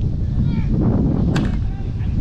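Softball bat hitting the ball once: a single sharp crack with a brief ring, a little over a second in. Steady wind rumble on the microphone and distant voices throughout.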